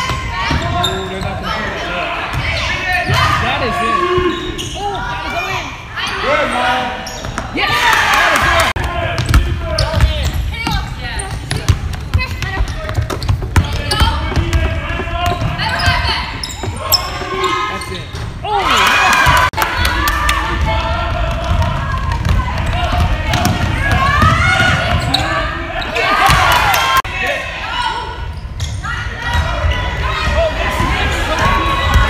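Basketball being dribbled and bouncing on a hardwood gym floor, with players and spectators calling out and shouting at intervals, echoing in the large hall.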